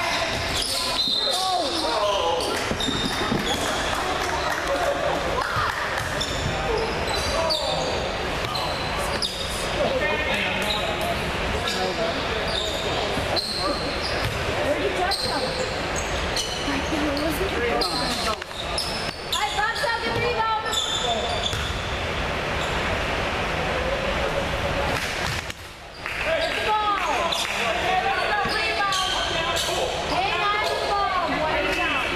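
Basketball bouncing and players moving on a hardwood gym floor, with overlapping indistinct voices of players and spectators echoing in the large hall.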